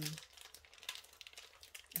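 Faint crinkling and rustling of plastic bags of wax melts being handled.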